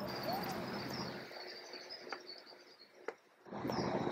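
Faint outdoor background with a thin, high, continuous chirping of birds and a couple of light clicks; the sound cuts out to dead silence for a moment about three seconds in, then the background returns.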